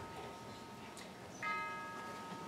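Bell-like chord on a keyboard instrument, struck and left ringing as it fades slowly, then struck again about one and a half seconds in.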